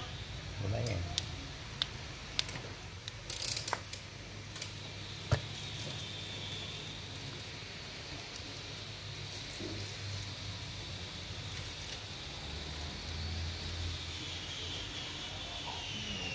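Light clicks and knocks from a circuit board and a power cable being handled on a workbench, several in the first five seconds, then steady low hum.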